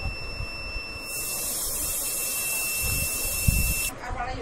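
A steady high hiss starts about a second in and cuts off suddenly just before the end, over a faint constant high-pitched whine and some low rumbling.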